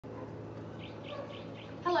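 A garden bird chirping in a quick, even series of short high notes, about five a second, over a steady low hum.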